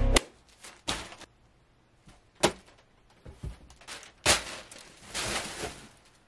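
Handling noises: a few sharp clicks and knocks spaced a second or two apart, then about half a second of crinkly rustling near the end from a black plastic bag being handled.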